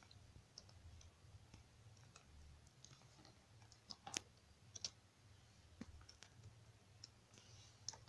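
Faint, scattered clicks of computer keyboard keys being pressed while text is typed and corrected, with the sharpest click about four seconds in.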